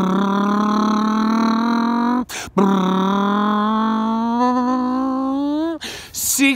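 A man imitating an engine with his voice through closed lips: two long held tones, broken by a short gap about two seconds in, the second slowly rising in pitch.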